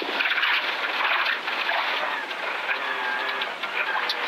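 Toyota GR Yaris rally car's turbocharged three-cylinder engine running hard at stage speed, heard from inside the cabin together with tyre and gravel noise from the dirt road, easing slightly near the end.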